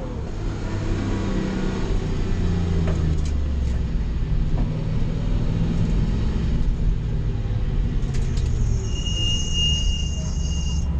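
Nissan 240SX drift car's engine heard from inside its stripped, caged cabin, running at low revs while the car rolls slowly. A high, steady squeal joins about nine seconds in.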